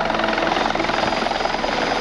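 Rescue helicopter hovering low over a rooftop helipad as it settles to land: steady, fast, even rotor-blade chop over the engine's hum.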